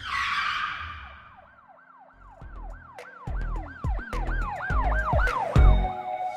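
Produced intro sting: a whoosh at the start, then a siren-like wailing tone that rises and falls about three times a second, over deep bass hits that come in about two seconds in and grow louder.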